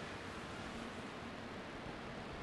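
Steady background hiss of room tone, with a faint low hum and no distinct events.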